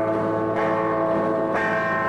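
Live rock band playing a slow instrumental passage: sustained, ringing chords through an amplifier, a new chord struck about every second, with no singing.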